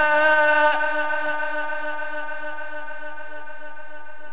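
A man reciting the Quran in a chanted, melodic style, holding one long steady note through a loudspeaker; the note eases slightly about a second in.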